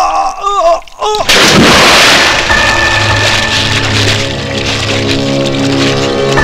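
Film soundtrack: two brief shouted cries, then a little over a second in a sudden loud boom with a long noisy decay, giving way to background music with long held notes.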